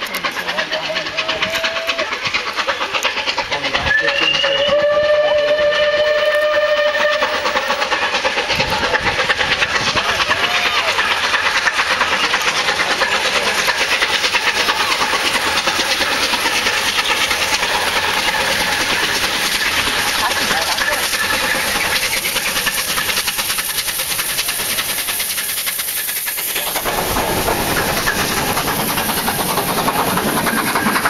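Bulleid Battle of Britain class steam locomotive 34067 Tangmere sounding its whistle in one chord-like blast of about three seconds, a few seconds in, then passing close with its exhaust and rolling noise growing loud. Near the end its coaches rumble past on the rails.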